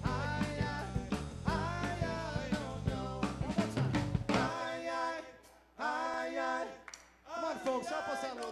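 Live band playing with drum kit, bass and vocals; about four and a half seconds in, the drums and bass drop out, leaving a few held notes separated by short gaps.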